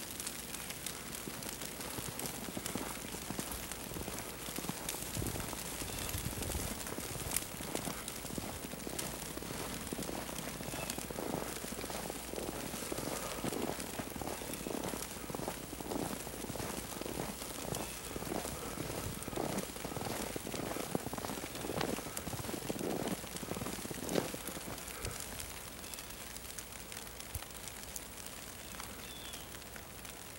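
Footsteps in fresh snow, a steady walking pace of about one and a half steps a second, from about ten seconds in until about twenty-four seconds, over a faint steady hiss.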